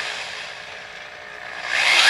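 Half-inch variable-speed electric drill turning the bead roller through a Turbo 350 flex plate. It runs slowly with a faint steady whine, then speeds up near the end with a rising whine that levels off.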